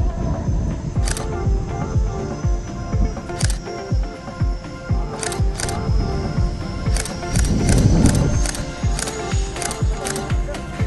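Background music with a steady beat: pulsing bass thumps several times a second under sharp high clicks.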